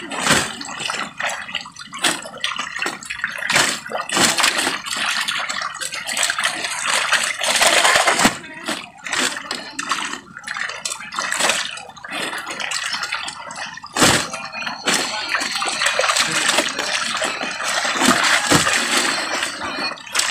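Water splashing, with a continual run of sharp slaps, knocks and rustles as a netful of harvested milkfish is handled and loaded into sacks. A louder knock comes about fourteen seconds in.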